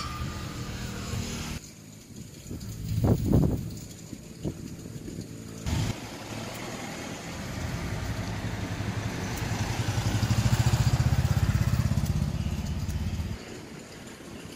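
A motor vehicle engine running with a low rumble. It cuts off abruptly about a second and a half in, with a few short louder sounds around three seconds. It comes back at about six seconds, swells to its loudest around eleven seconds and drops away just before the end.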